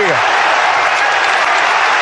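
Football stadium crowd roaring and cheering a goal, a steady, dense wash of noise. The tail of the commentator's shout falls away right at the start.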